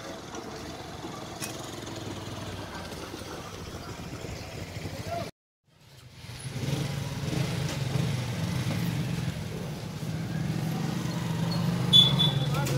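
Street ambience with traffic and motorcycles passing and indistinct voices. The sound drops out completely for a moment about five seconds in, then comes back louder with a steady low hum under the voices.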